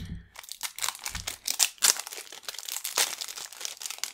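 Cellophane wrapper being pulled off a sealed deck of playing cards, crinkling and crackling all through, with a dull bump of handling near the start and another about a second in.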